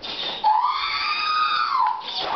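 R2-D2 droid replica playing its scream sound effect through its speaker: one long electronic wail that rises about half a second in, holds, and falls away near the end.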